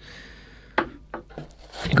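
Hands handling parts of a microphone kit in a cardboard box with a foam insert: a soft rubbing rustle, then a few light knocks around the middle.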